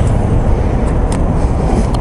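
Gasoline running from a pump nozzle into a motorcycle's fuel tank as the tank is topped off: a steady rushing noise over a low rumble.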